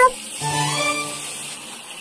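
Tap water running into a bathtub as the hot and cold taps are mixed, with soft background music of held notes under it.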